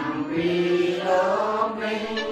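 A group of voices chanting a Buddhist chant in unison, in long held notes whose pitch steps down and back up.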